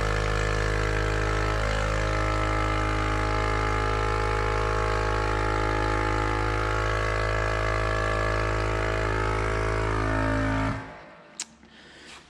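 Vacuum pumps of a Clad Boy CB4 vacuum lifter running with a steady hum, drawing the suction pads down onto the panel, then switching off suddenly near the end once full vacuum is reached.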